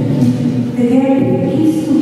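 A woman's voice in drawn-out, sing-song phrases.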